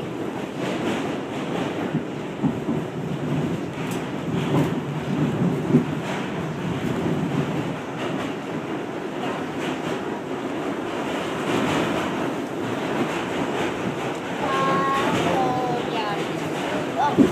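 Subway train car running, a steady rumbling noise heard from inside the car, with a few sharp clicks along the way and a short high-pitched tone near the end.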